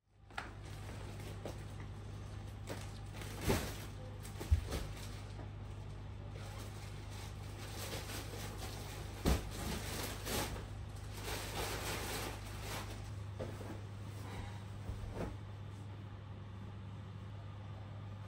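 A duvet in a plastic bag and bedding being handled: rustling with a few sharp knocks, the loudest about four and a half seconds in, over a steady low hum.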